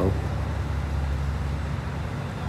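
A steady low background rumble with a faint hiss, no distinct events.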